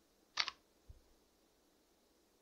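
A keystroke on a computer keyboard: a short double click about a third of a second in, the Enter key sending off a typed search. A much fainter low knock follows just before one second in.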